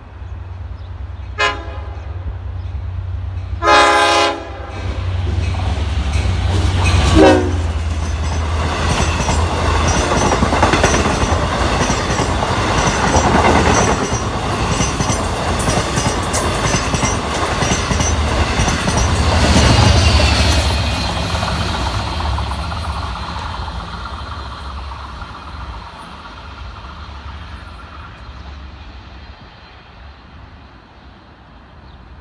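Long Island Rail Road express train passing through a station at speed: its horn sounds several short and longer blasts in the first seven seconds, the last dropping in pitch as it goes by. Then comes a loud rumble of wheels clattering over the rails as the bilevel coaches pass, fading away near the end.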